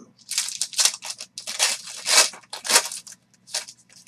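Foil wrapper of a 2020 Panini Origins football card pack torn open and crinkled in the hands: a run of about seven crackling rustles over some three seconds.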